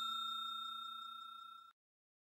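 Ring-out of a notification-bell ding sound effect: a steady bell tone fading away and cutting off shortly before the end.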